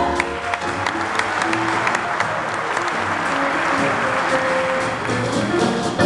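Audience applauding while a jazz band keeps playing underneath; the applause thins out near the end and the band's notes come through clearly again.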